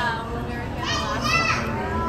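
Young children's high-pitched voices calling out, loudest about a second in, over steady background noise.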